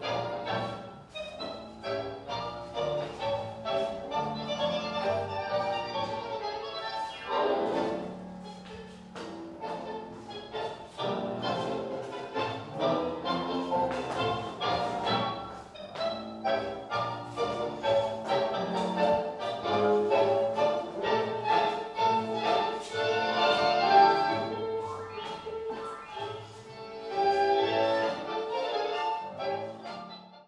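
Instrumental tango music played by an orchestra, with a strongly marked regular beat that runs through the whole passage.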